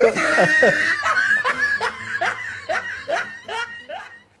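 Laughter right after a joke's punchline: a run of short, repeated ha-ha bursts that trail off near the end.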